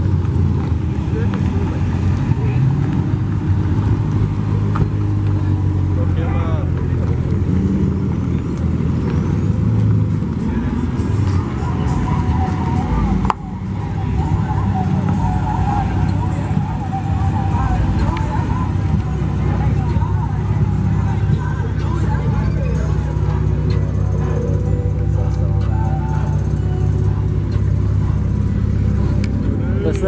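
Car engines running nearby, a steady low rumble, with people talking in the background.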